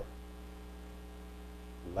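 Steady electrical mains hum, a low, even buzz made of several steady tones.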